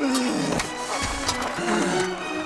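Film soundtrack of a close sword-and-shield fight: music under fight sound effects, with a man's strained, falling grunt at the start and several sharp clattering hits.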